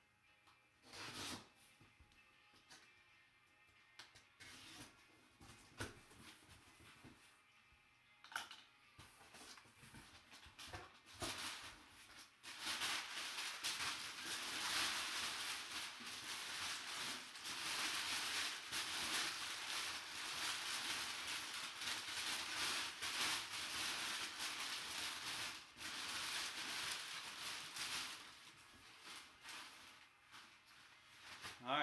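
Cardboard box being opened: a few scattered scrapes and taps at first, then from about twelve seconds in, continuous loud rustling and crinkling of crumpled brown packing paper being pulled out of the box.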